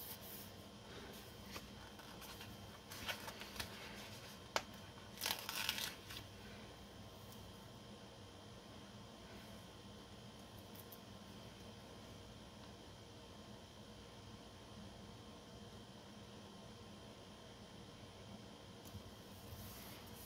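Mostly quiet room tone, with a few faint paper rustles and light ticks a few seconds in as hands press clear floral sticker strips onto planner pages.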